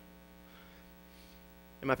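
Steady low electrical hum with a faint hiss, the pitch holding level throughout. A man's speaking voice starts near the end.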